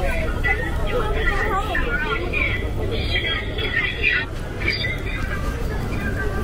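Busy city street: passersby talking close by over a steady low rumble of traffic.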